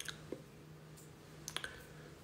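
A few faint, sharp clicks over a low, steady hum in a quiet room.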